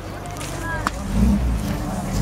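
A car engine running, its low hum coming up about a second in. Just before it there is a short squeak and a sharp click.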